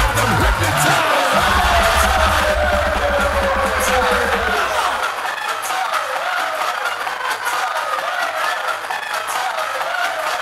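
Electronic dance music playing loud, with heavy bass that drops out about five seconds in, leaving the wavering synth melody on its own.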